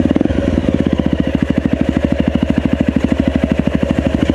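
Enduro motorcycle engine running steadily at low revs with an even, fast beat, the bike ridden slowly along a forest trail.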